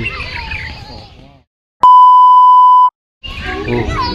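A single loud, steady, high-pitched electronic bleep lasting about a second, edited in with a moment of dead silence just before and after it, like a censor bleep. Outdoor ambience and voices fade out before it and return after it.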